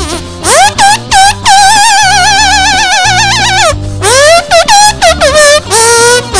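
An instrumental blues-rock break in which the lead melody is played by the squeaks of a 1998 K-Mart bicycle tire pump over bass and drums. Each note slides up into pitch and wavers, with one note held for about two seconds in the middle.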